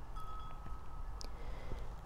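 Wind chime ringing softly in the wind: one held note struck just after the start, with a brief higher ping a little past halfway, over a faint low rumble of wind.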